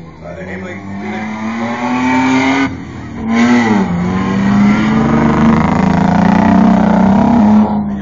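Off-road 4x4 race truck engine running hard at high revs under load, its pitch climbing, breaking off briefly about three seconds in, then rising again and held high until it falls away near the end.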